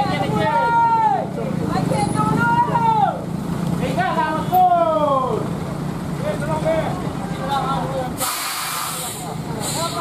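Heavy truck's diesel engine running with a steady low hum while people call out. About eight seconds in comes a short sharp burst of compressed air from the truck's air brakes, with a second brief hiss near the end.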